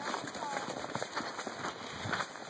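Footsteps crunching over snow: a series of short, irregular crunches, with faint voices of a group in the background.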